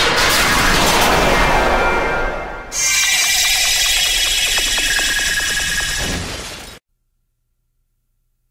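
Intro sound effects: a swelling rush of noise, then about three seconds in a sudden bright crackling crash that fades and cuts off abruptly about a second before the end.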